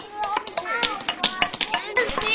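A quick run of light taps and clicks among children's chatter.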